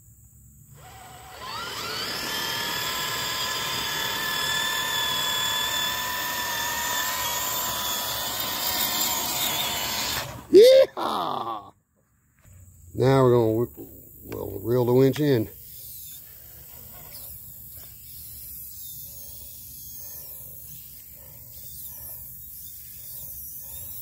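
Small electric RC winch motor whining steadily for about nine seconds as it reels in line under load, pulling a stuck truck; it is a weak winch. It stops about ten seconds in, followed by a brief sharp sound with a sliding pitch.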